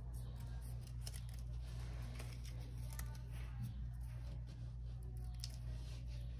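Small scissors snipping a paper strip, a scatter of light, irregular cuts while the strip is trimmed, over a steady low hum.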